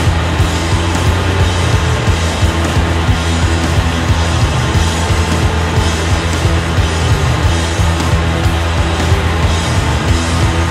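Loud rock music from a band: electric bass guitar and drum kit playing continuously, with changing bass notes and steady drum hits.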